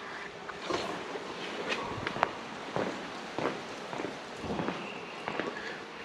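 Footsteps and handling noise from a handheld camera being moved: faint scuffs and rustles with a few light, sharp clicks scattered through.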